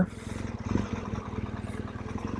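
BMW adventure motorcycle's engine running steadily at low revs while the bike rolls slowly.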